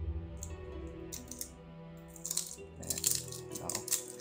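Cellophane shrink-wrap crinkling and tearing as it is pulled off a sealed deck of trading cards, in several quick crackles from about a second in, loudest near the three-second mark. Steady background music plays underneath.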